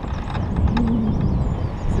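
Airflow buffeting the camera microphone in paraglider flight: a steady, loud low rumble of wind noise.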